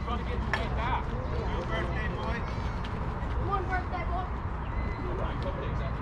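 Faint, scattered voices of people talking at a distance over a steady low background rumble, with no loud event.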